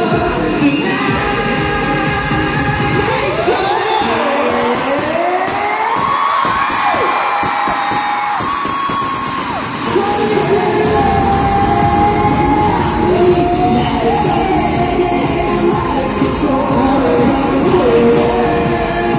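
A K-pop song performed live, loud through an arena sound system, with singing over it and a crowd cheering. The bass drops away for several seconds and comes back about eleven seconds in.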